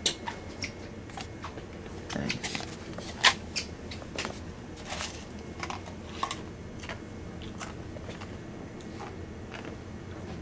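Scattered small clicks and rustles of handling, the loudest about three seconds in, over a steady low hum.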